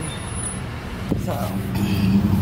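Car cabin noise: a steady low rumble from the engine and road. Near the end a steady low hum sets in and becomes the loudest sound.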